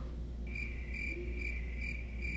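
Crickets chirping: a high, pulsing chirp repeating about two or three times a second, starting about half a second in, over a low steady hum. It comes in as the waiting drags on, in the manner of the 'crickets' sound effect for an awkward silence.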